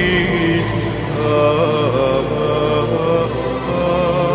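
A song: a singing voice holds long, wavering notes over a band's instrumental accompaniment.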